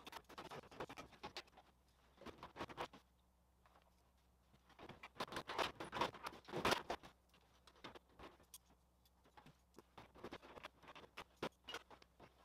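Thin sheet-aluminium fuselage side being handled and worked into place on its frame: irregular bursts of light rattling, scraping and clicking, busiest and loudest a little past the middle, then scattered single clicks.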